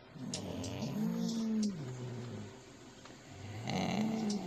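Domestic cat making a long, low call that rises and falls in pitch, lasting about two seconds, with a second one starting near the end.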